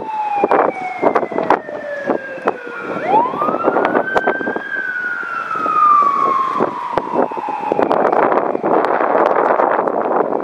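A siren wailing: a falling tone, then a quick wind-up about three seconds in that dies away slowly over the next few seconds. Wind gusts on the microphone and handling knocks run throughout, with heavier wind noise in the last two seconds.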